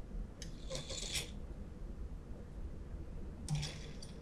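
Faint small clicks and rustles in two short clusters, one about half a second to a second in and another near the end, over a low steady hum.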